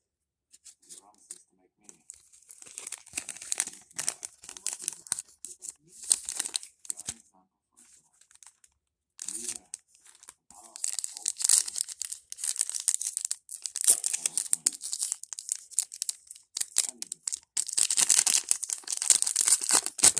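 Foil trading-card pack wrapper crinkling and tearing as a pack of football cards is ripped open by hand. The crinkling comes in bursts, heaviest over the last several seconds.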